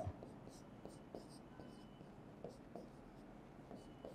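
Faint scratching and squeaking of a marker pen writing on a whiteboard, in a few short strokes.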